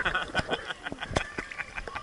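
Water splashing and sloshing against a camera held at the surface of a swimming pool, with irregular small clicks and knocks.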